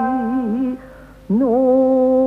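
Female jiuta singer holding a long vowel with a wide, wavering vibrato over the fading ring of a shamisen note. The voice breaks off about three-quarters of a second in, then comes back with a scoop up into a steady held note.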